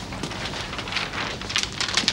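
Crackling rustle of a large sheet of stiff paper being handled, growing louder toward the end.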